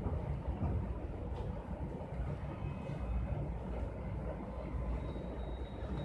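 A steady low rumble of background noise, with a faint thin high tone coming in about five seconds in.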